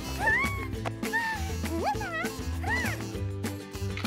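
Upbeat cartoon background music with a steady beat, with a cartoon character's high, squeaky wordless vocal sounds over it: about four short calls that swoop up and down in pitch.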